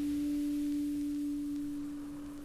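A single steady, pure low tone, like a sine tone, played back from a record and slowly fading away.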